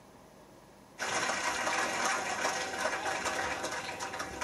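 Rapid hand drumming on a set of congas, a dense run of quick strokes that starts suddenly about a second in.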